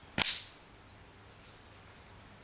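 A single shot from a Daystate Huntsman Classic .177 pre-charged air rifle with a shrouded barrel: one sharp crack that dies away quickly, followed about a second later by a faint high tick.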